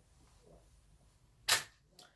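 A single sharp impact, like a smack or knock, about a second and a half in.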